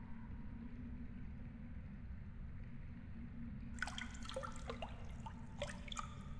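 Cave ambience: a faint, steady low rumble, joined from about four seconds in by a quick run of water drips plinking into a pool.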